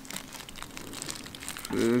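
Foil pouch of hookah tobacco crinkling as it is squeezed and emptied: a quick run of small irregular crackles.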